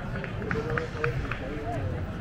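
Background chatter of people's voices on a beach, with a quick run of short ticks, about four a second, in the first half.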